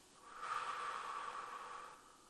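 A woman taking one slow, audible breath through the mouth, lasting about a second and a half, as a paced breath in a calming breathing exercise.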